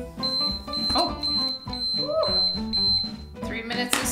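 Square dial countdown timer sounding its alarm: a high electronic beep repeating in quick pulses for about three seconds as the three-minute session runs out.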